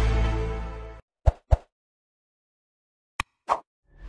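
The last chord of an intro jingle fades out over the first second, followed by short pop sound effects: two in quick succession, a pause of near silence, then two more near the end.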